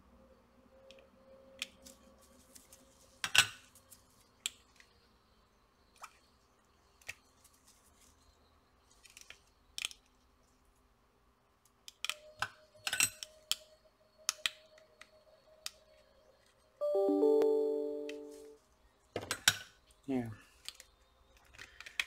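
Sparse small clicks and taps of tweezers and a soldering iron working on a power bank's circuit board and plastic case. About three-quarters of the way through, a short chime of a few steady notes sounds for under two seconds and is the loudest thing.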